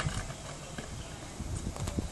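A Power Wing caster scooter's small hard wheels rolling over a textured concrete driveway, a gritty rumble that dies away as it slows to a stop. A few sharp clicks come near the end.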